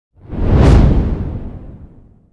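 Whoosh sound effect for an animated logo intro: a deep, noisy sweep that swells in about a quarter second in, peaks within half a second, then fades away over about a second and a half.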